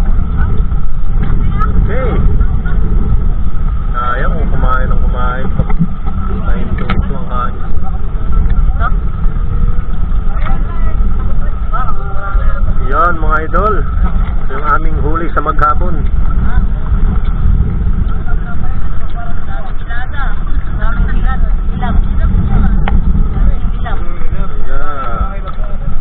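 Engine of a small motorized fishing boat running steadily: a constant low rumble with a steady higher tone, with voices talking over it at times.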